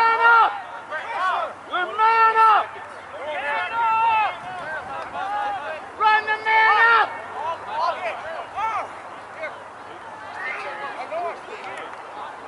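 Lacrosse players and coaches shouting calls across the field: loud, drawn-out yells right at the start, about two seconds in and about six seconds in, with fainter shouts from other voices in between.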